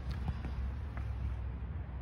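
Steady low outdoor background rumble, with a few faint light ticks near the start and about a second in.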